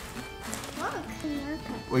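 A small child's brief high-pitched vocal sounds, a quick rise and fall in pitch about a second in, over quiet background music.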